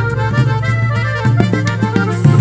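Live norteño conjunto playing dance music: accordion melody over a steady bass line, with a regular cymbal tick keeping the beat.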